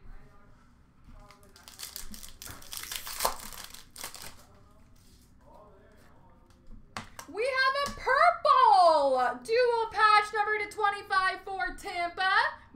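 Crinkling and rustling of trading cards and their plastic packaging being handled. About seven seconds in, a loud, high-pitched voice starts and carries on to the end, its pitch sliding up and down, speaking or singing without clear words.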